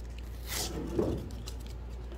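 Sticky-backed sandpaper being peeled off an air file's soft foam sanding pad, with two short soft tearing sounds, about half a second in and again around a second in. The adhesive has stuck to the pad, so the pad's backing is tearing away with the paper.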